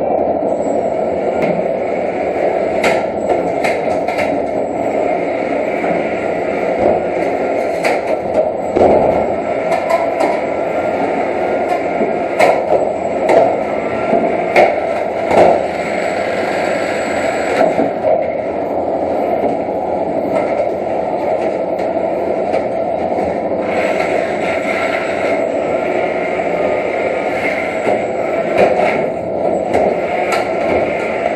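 Antweight combat robots fighting: a steady whir from a spinning weapon and whining drive motors, with frequent sharp knocks and scrapes as the robots hit each other and the arena walls.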